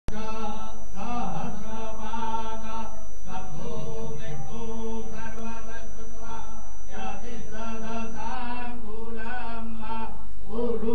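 Hindu devotional chanting, a mantra sung in long held notes that bend and waver, with short breaks between phrases.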